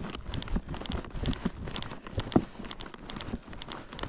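Footsteps of a person walking outdoors: a run of irregular crunching steps and small knocks.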